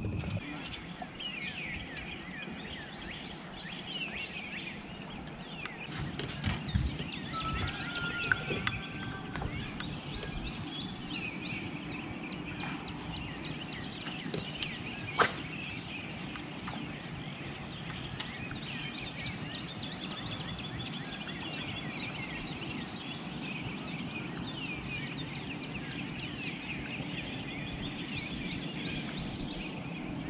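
Many birds chirping and calling in a dense dawn chorus over a low steady hum, with one sharp click about halfway through.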